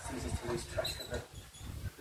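Voices talking indistinctly, with a brief high squeak about a second in.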